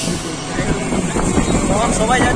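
Ride inside an open-sided rickshaw: a steady vehicle rumble and road noise, with voices talking over it toward the end.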